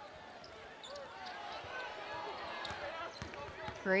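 Arena court sound of live basketball play: a ball dribbled on a hardwood floor in a few scattered knocks, under a quiet background of crowd and bench voices.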